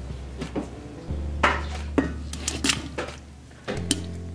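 Chopped onion being added to a cooking pot: a series of sharp clatters and knocks of kitchen utensils against the pot, over a steady low hum.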